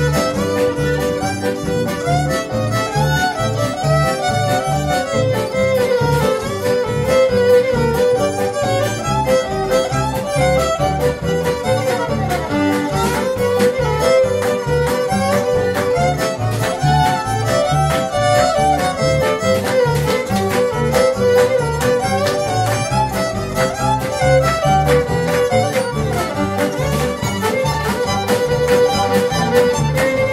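Western swing band playing a polka, the fiddle carrying the lead melody over a steady bouncing beat from upright bass, steel guitar and rhythm guitars.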